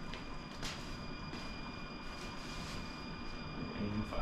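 Quiet room sound with a few faint scuffs and knocks of a person moving about and picking up a piece of equipment, over a faint steady high whine.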